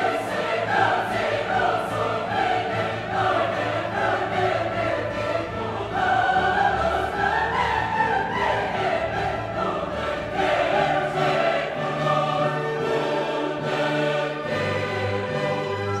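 Background classical music: a choir singing in an operatic style with orchestral accompaniment, the voices wavering with vibrato.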